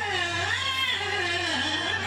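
Qawwali singer's voice drawing out one long, sliding melismatic line that bends slowly up and down, over a steady low hum.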